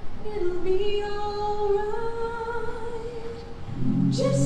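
A cappella singing: a single voice holds long, slowly moving notes, and near the end lower voices come in underneath with sustained harmony.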